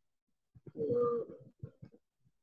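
A child's voice over a video call, hesitating with one drawn-out "I…" before a few short fragments.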